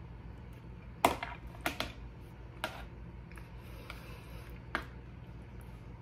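A person chewing a mouthful of baked beans: a handful of short, scattered mouth clicks over a steady low room hum.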